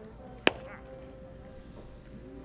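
A single sharp crack of a pitched baseball's impact, about half a second in, with a short ringing tail.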